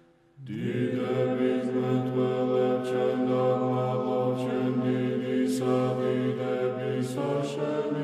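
A choir chanting a slow Orthodox hymn in close harmony over a low held bass note. It comes in about half a second in, after a moment of near silence, and holds long sustained chords, with soft hissing consonants now and then.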